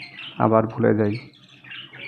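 Caged budgerigars chirping and chattering, with short high calls at the start and again near the end, around a man's spoken word.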